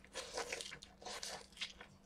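A man chewing and crunching on food close to the microphone, likely crisp lettuce, in short irregular bursts.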